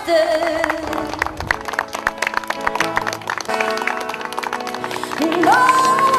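Background song with a steady run of quick notes between sung lines; a voice comes back in with a held, rising note near the end.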